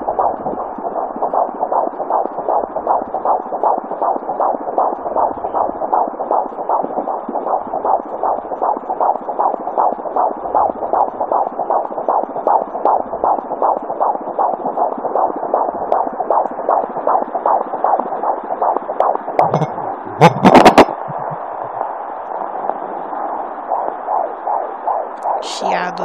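Fetal heartbeat at 19 weeks heard through a handheld fetal Doppler's speaker: a fast, even galloping pulse. About twenty seconds in, a brief loud knock from the probe being handled.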